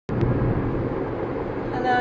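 Steady low rumble of car cabin noise, with two sharp clicks at the very start. A woman's voice begins near the end.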